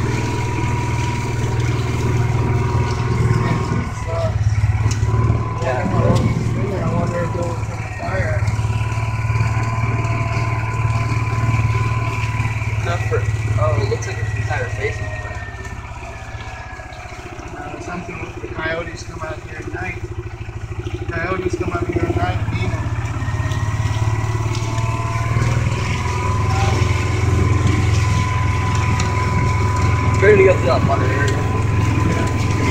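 A four-wheel-drive vehicle's engine running steadily as it drives over a rough field, likely in four-wheel low, with scattered knocks and rattles from the bumpy ground. The engine eases off for a few seconds around the middle, then picks back up.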